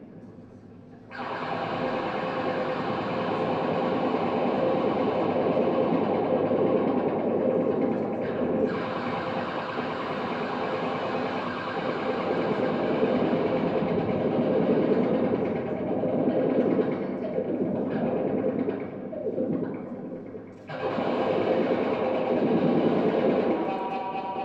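Disarm violin, an instrument built from decommissioned firearm parts, bowed continuously. It gives a rough, grating tone over a steady held pitch. It starts about a second in and breaks off briefly near the end before resuming.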